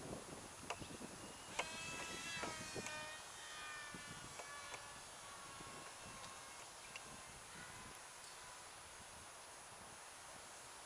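Small 3.7 V coreless electric motor and propeller, run from a 2.7 V supercapacitor, buzzing as the glider flies. Its pitch sinks slowly and the buzz fades out about halfway through, after a few sharp clicks in the first seconds.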